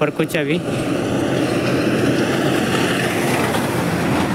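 Steady rushing noise of wind and road while riding a bicycle along a dirt track, after a brief word at the very start.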